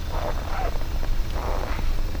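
Two soft crunches about a second apart, footsteps on packed snow, over a steady low rumble.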